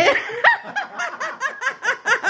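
A person laughing: a rapid run of short, high-pitched laughing pulses, about six a second.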